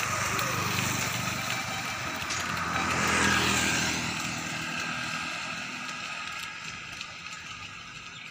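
A motor scooter passes close by. Its engine swells to its loudest about three seconds in, then fades as it moves off, over steady road noise.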